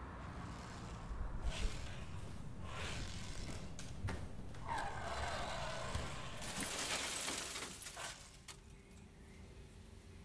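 Soft knocks and footsteps, then a longer rustle from about five to eight seconds in as toys in a plastic storage bin are handled. After that it settles to quiet room tone.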